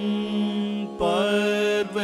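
Carnatic vocal duet with violin accompaniment: a long held note, then from about a second in a sliding, ornamented melodic phrase.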